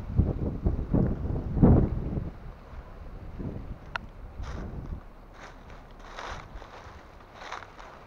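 Wind buffeting the microphone in the first two seconds, then several short crackling rustles of dry palm fronds being pushed through and stepped on.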